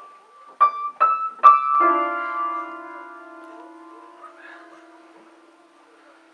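Upright piano keys struck by a toddler: three single notes about half a second apart, then a cluster of keys pressed together that rings on and slowly fades away.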